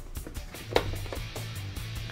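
Wire leads and plastic plug connectors being handled and pushed together, with one sharp click about a third of the way in, over a steady low hum.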